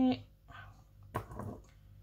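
A woman's voice drawing out the word "there" at the start, then a short, quieter murmur about a second in; otherwise low room sound with a faint steady hum.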